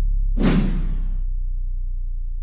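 A whoosh sound effect about half a second in, lasting under a second, over the slowly fading low bass note of an intro music sting.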